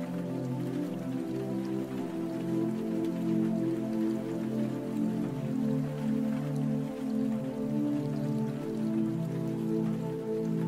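Calm, slow music of held tones that change pitch every second or so, over steady rain falling.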